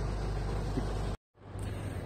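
Steady outdoor background noise with a low hum underneath. It cuts out abruptly a little over a second in and returns as a similar steady rumble.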